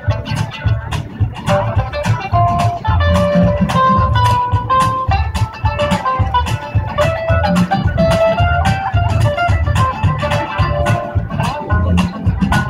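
Live amplified band playing an instrumental break: a lead guitar line of held notes over bass guitar and a steady drum beat.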